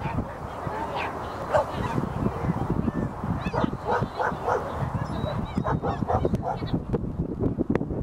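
Dogs barking again and again in short sharp barks, over a background of crowd chatter.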